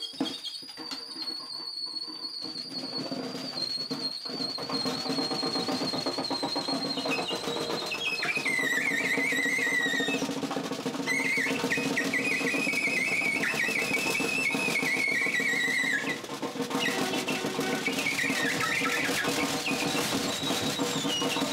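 Alto saxophone played as very high squealing tones: a long high note held for about ten seconds and sinking slightly, then a lower wavering cry that breaks off twice. Beneath it, a snare drum worked with bare hands makes a dense rattling drone that swells louder over the first few seconds.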